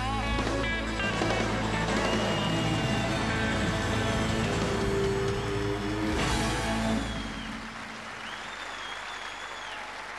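Live country band playing out the final held chord of the song, with a last hit about six seconds in and the band stopping about a second later. The crowd then applauds and cheers, with whistles over the clapping.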